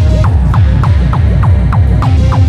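Hardcore techno (gabber) track playing loud: a fast distorted kick drum at about four beats a second, each beat falling in pitch, over a heavy bass.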